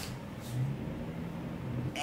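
Faint low hum, a little stronger from about half a second in, over quiet room tone.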